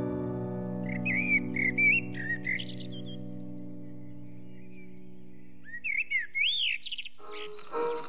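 Birds chirping in short clusters of quick rising and falling whistles, over a held music chord that slowly fades away. Near the end, new music with a dull, narrow sound begins.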